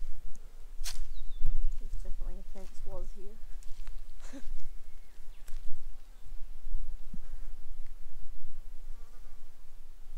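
Quiet bushland ambience: insects buzzing and a few short bird calls over a low rumble.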